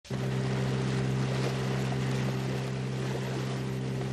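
Boat motor running at a steady, unchanging pitch over a steady hiss.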